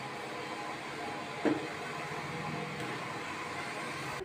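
Steady hissing rush of a gas stove burner heating a pot of jaggery syrup, with a single small click about one and a half seconds in.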